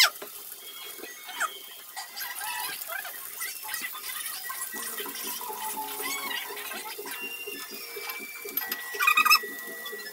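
Okra pods sizzling as they fry in oil in a non-stick pan, a steady hiss, with a brief loud squeak near the end.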